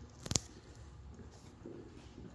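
A single sharp tap about a third of a second in, then faint soft rustling over quiet room tone.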